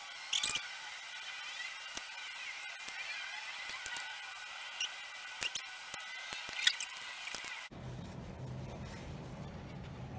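Felt-tip markers squeaking and scratching across paper as stripes are coloured in, with a few light taps. The squeaking cuts off suddenly about three-quarters of the way through, leaving quiet room sound with a low hum.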